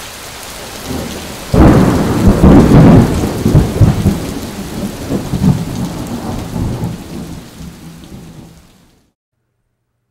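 Thunderstorm sound effect: steady rain hiss, then a loud sudden thunderclap about a second and a half in that rumbles on and fades away over several seconds, ending in silence near the end.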